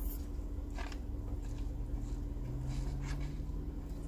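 Steady low hum of a car cabin with the engine idling, and a couple of brief sips through a drinking straw about a second in.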